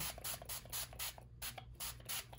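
Distress Oxide spray bottle's pump nozzle spritzing ink mist onto paper in a rapid run of short hissing sprays.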